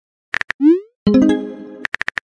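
Texting-app sound effects: a few quick taps, a short rising pop as a message is sent, then a bright ringing chime that fades out. A few more taps come near the end.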